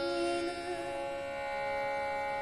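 A woman singing a thumri in Raag Khamaj over a steady drone accompaniment. Her held sung note fades out about a second in, leaving only the drone.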